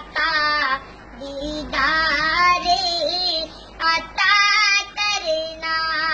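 A boy singing a naat, a devotional poem in praise of the Prophet Muhammad, solo in a high, wavering, ornamented voice, in several phrases broken by short pauses.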